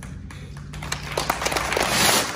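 Crowd applause starting up: a few scattered claps at first that quickly thicken into steady, growing clapping.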